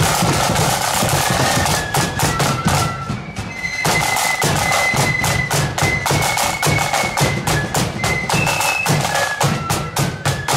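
Marching flute band playing a tune: snare drums rolling and beating the march with a bass drum, under a shrill melody of flutes. There is a short lull about three and a half seconds in.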